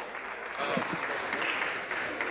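Legislators applauding by clapping their hands, a steady spread of claps from the benches, with faint voices underneath.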